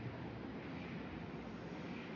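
Steady, low ambient background noise with no distinct event.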